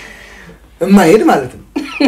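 Speech only: a man's voice, starting a little under a second in after a short pause.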